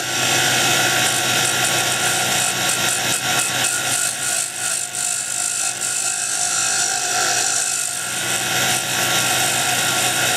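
A wood lathe running steadily with a motor hum. A dart blank spins on it, and a continuous hiss comes from the wood as it is worked by hand against the spin.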